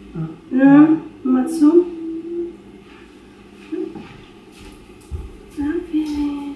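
Short wordless voice sounds, several brief calls and one held note, in the first half, then a quieter stretch with faint low thumps and another brief vocal sound near the end.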